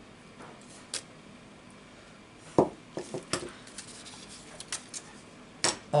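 Clear acrylic stamp block knocking and clicking against the work surface as it is handled, pressed and lifted off the card: a faint click about a second in, a sharper knock halfway through followed by a few lighter clicks, and another click near the end.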